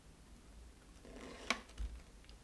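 Faint sound of a milky cocktail mix being poured from a glass bottle into a paper coffee filter, with a small click about one and a half seconds in and a soft low knock just after as the pour ends.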